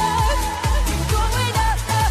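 Dance-pop song with a steady kick-drum beat about twice a second, a synth bass and a long, held, wavering sung note.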